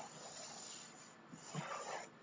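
Faint breathing of a person straining in a handstand: a long, breathy exhale lasting about a second, then softer breath sounds.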